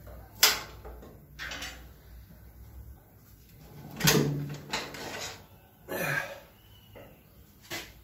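Metal knocks and clunks as a Ford 8N's hydraulic lift cover is worked loose and lifted off the cast-iron rear housing: about six separate knocks, the sharpest about half a second in.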